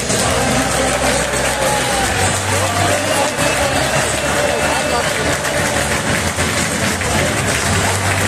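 Football stadium crowd singing and cheering over music from the stadium loudspeakers: a dense, steady wall of sound with a bass line underneath.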